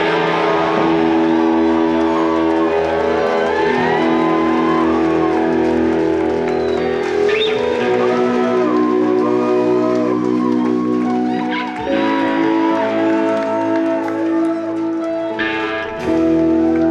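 Live indie-pop band playing an instrumental passage: two electric guitars over drums, with sustained chords and melody notes that slide in pitch. There is a short break about twelve seconds in before the chords come back in.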